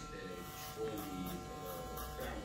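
Electric hair clippers running with a steady buzz as they cut a child's short hair, with a voice speaking faintly underneath.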